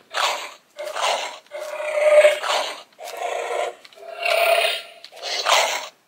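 Power Rangers Dino Fury Morpher toy playing electronic combat sound effects through its small speaker as it is swung. About six short bursts with brief gaps between them, thin and without bass.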